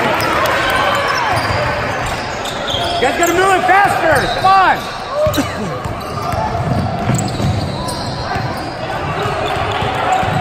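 Basketball dribbled on a hardwood gym floor, with a quick run of sneaker squeaks from about three to five seconds in. Voices of players and spectators echo through the hall.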